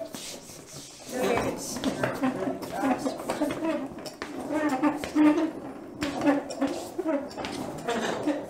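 A woman's wordless voice, with light metallic clinks and rattles from a low metal shop stool as she shifts and scoots about on it.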